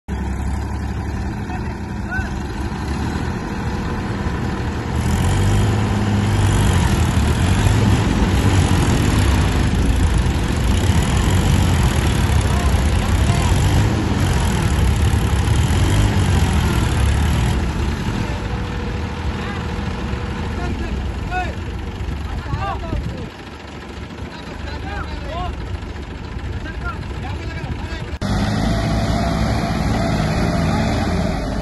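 Diesel tractor engines labouring under heavy load, the Massey Ferguson 9500 and New Holland 3032 straining to pull free of deep paddy-field mud. The engine noise grows heavier about five seconds in, eases after about eighteen seconds and dips briefly a little later.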